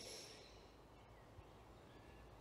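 Near silence: quiet woodland air with faint, thin bird calls, and one faint tick about halfway through.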